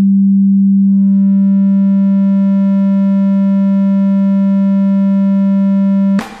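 A synthesizer oscillator's steady low tone. About a second in it starts to brighten as fainter higher overtones join one after another, building the plain sine tone into a triangle wave by additive synthesis.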